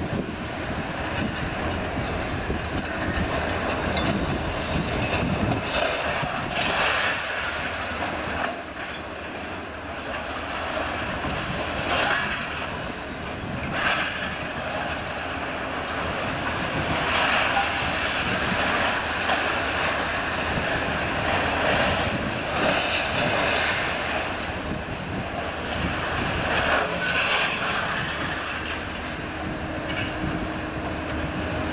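Liebherr scrap material handlers' diesel engines and hydraulics running steadily, with scrap metal clattering and crashing in the grapples several times.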